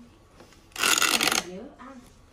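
A brief, loud rustling rasp lasting well under a second, followed by a short spoken word.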